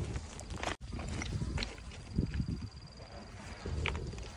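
Footsteps crunching on railway ballast stones: irregular short crunches and knocks over a low rumble, broken by a brief dropout about a second in.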